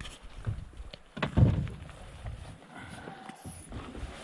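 Footsteps on grass and knocks from handling gear close to the microphone, with one heavier thud about a second and a half in.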